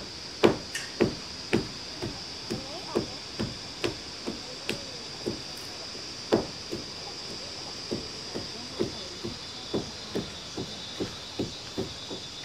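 Irregular knocking of hammer blows on building work, one or two a second and uneven in strength, over a steady high-pitched chorus of insects.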